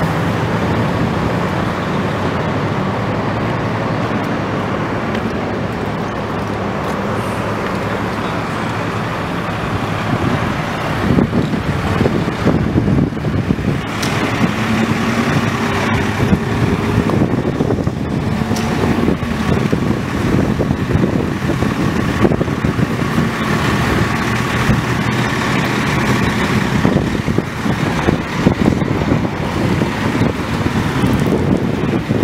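Road traffic: vehicles running and passing, with a steady engine hum underneath. From about ten seconds in, the sound turns choppier, with rustle and wind on the microphone.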